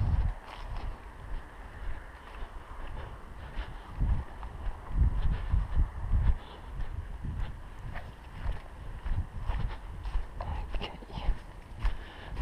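Footsteps of a person walking briskly over grass and leaf litter: a run of uneven, dull low thuds.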